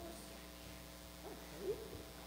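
A young child's short, high, wavering vocalization near the end, over a low steady electrical hum.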